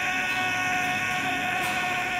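A male singer holding one long, high sung note, steady in pitch, live through the concert sound system.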